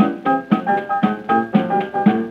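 A 1928 jazz trio recording of piano, clarinet and drums, with the piano to the fore. It plays an even, bouncing beat of about four accented notes a second.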